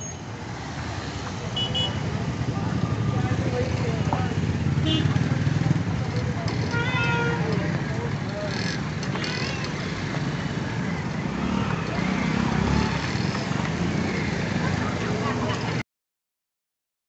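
Busy street ambience: steady traffic noise with indistinct voices of passers-by and a few short pitched calls. The sound cuts off suddenly just before the end.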